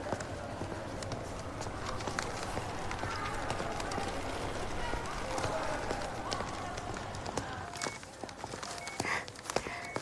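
Footsteps on a hard hospital corridor floor over a murmur of indistinct background voices. Near the end, a short electronic two-tone beep starts repeating about once a second.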